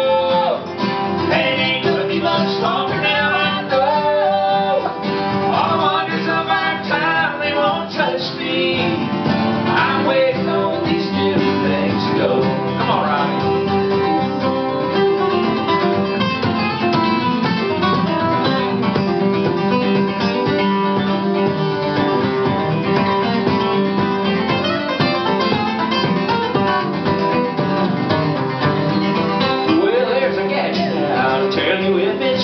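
Live acoustic guitar music: an instrumental break in a country song, with picked melody lines moving over steady strummed chords.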